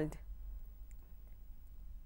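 Quiet room tone with a steady low hum and a couple of faint clicks about a second in.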